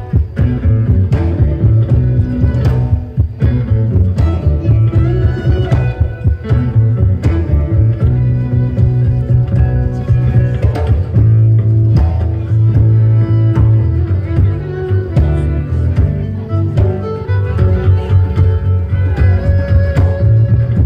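A live band playing an instrumental passage, with a prominent upright bass line under guitar and fiddle.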